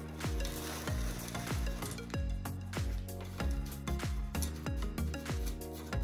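Small rocks poured from a plastic bag into a small planter pot, a hiss over the first two seconds or so, then fingers spreading them. Background music with a steady beat runs throughout and is the loudest sound.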